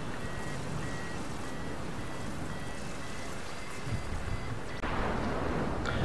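Airflow rushing over a hang glider and its wing-mounted microphone in flight, growing louder about five seconds in. Under it, a flight variometer beeps at a steady high pitch in short beeps that run together into a longer tone, the sign of the glider climbing in lift.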